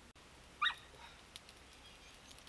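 A dog gives one short, high yelp about half a second in, with a few faint clicks after it.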